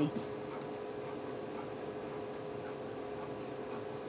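Scissors cutting through fabric: a series of faint, irregular snips and rubs over a steady faint hum.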